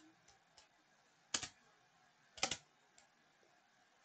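Two soft clicks from a computer keyboard or mouse button, about a second apart, each a quick pair of ticks like a press and release.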